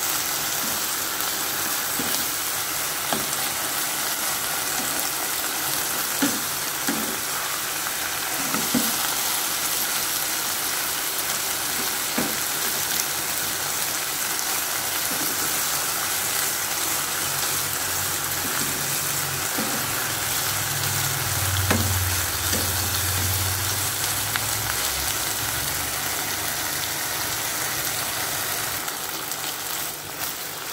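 Minced pork, sliced banana peppers and baby corn sizzling steadily in a wok while being stir-fried with a wooden spatula, which knocks and scrapes against the pan every few seconds.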